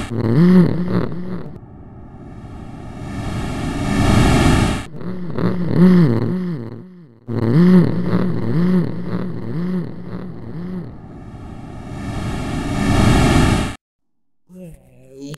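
Electronic soundscape. Swells of hissing noise build for two to three seconds and cut off abruptly, three times. They alternate with a buzzing drone that warbles about twice a second.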